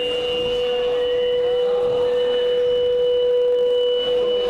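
A steady, unchanging tone held for several seconds over the background noise of a large hall.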